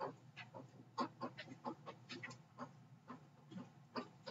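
A stylus tapping and scraping on a digital writing surface while a few words are handwritten: a string of short, quiet, irregular clicks, roughly three or four a second.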